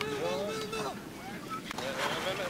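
Wind buffeting the microphone on an outdoor practice field, with faint voices talking in the first second. Near the end the sound changes to a busier, noisier field ambience.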